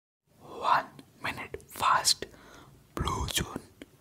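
ASMR mouth sounds made close to the microphone: four quick breathy, whispery bursts, with sharp mouth clicks between them.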